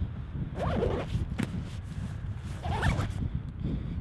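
Zipper on a Lowepro Whistler BP 450 AW camera backpack being drawn along a compartment, in two short rasping pulls, one under a second in and one near the end.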